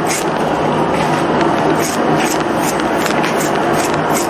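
A knife slicing kernels off ears of white corn into a metal tub, in repeated scraping strokes along the cob as the kernels shower down into the pile.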